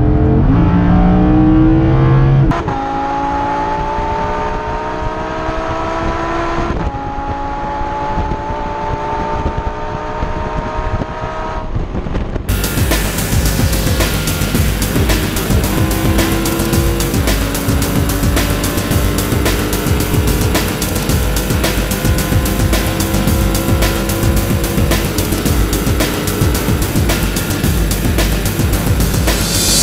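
Lamborghini Huracán LP610-4's naturally aspirated V10 under full throttle, heard from inside the cabin, climbing in pitch through the gears. Quick upshifts drop the pitch about two and a half seconds in and again near seven seconds. From about twelve seconds in, music with a steady beat plays loudly over the engine, which keeps pulling slowly higher in top gear.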